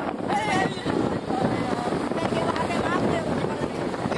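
Steady wind on the camera microphone, with faint voices in the background near the start and near the end.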